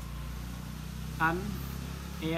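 Low, steady hum of a motor vehicle's engine running, with a short spoken syllable a little past the middle.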